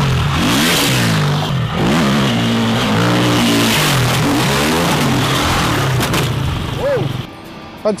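Enduro dirt bike engine revving up and down repeatedly under throttle over rough ground, dropping away about seven seconds in.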